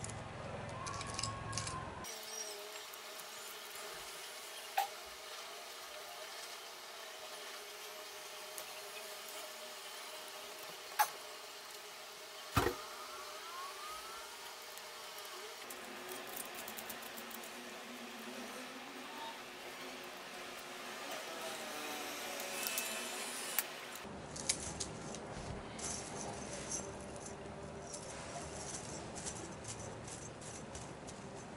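Small metal chainmail rings clinking and jingling against each other as they are handled and closed with needle-nose pliers, with a few sharp metallic clicks.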